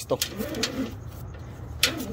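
A dove cooing faintly: one low, wavering phrase about half a second in. A single sharp click comes near the end.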